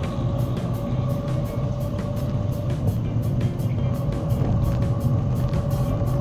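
A car driving along a city avenue: steady engine and road rumble. Background music with a steady, evenly ticking beat plays over it.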